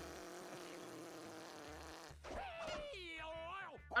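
A cartoon character blowing a long, buzzing raspberry for about two seconds. It is followed by a vocal cry whose pitch slides up and down.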